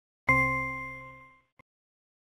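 A single chime sound effect from the lesson software, struck once and fading away over about a second, followed by a faint click. It is the software's signal that the answer just placed in the blank is correct.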